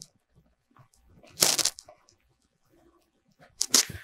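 Makeup sponge patting and rubbing liquid foundation on the face: two short scuffing bursts, about a second and a half in and again near the end.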